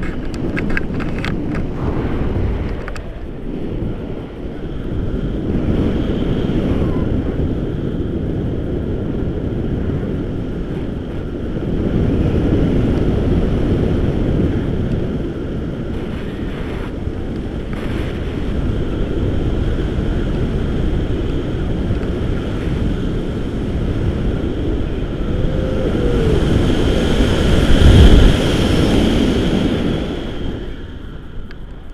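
Airflow buffeting the microphone of a handheld action camera during a tandem paraglider flight: a steady rumbling wind noise that swells and fades, loudest near the end. A few clicks near the start.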